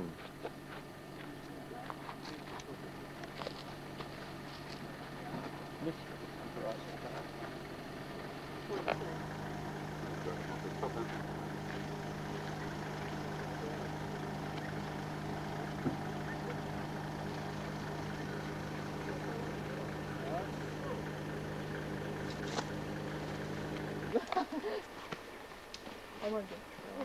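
A four-wheel-drive vehicle's engine idling with a steady hum. It gets louder about nine seconds in and cuts off abruptly near the end.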